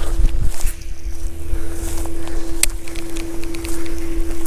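Wind buffeting the microphone with a low rumble, under a steady faint hum and a single sharp click about two and a half seconds in.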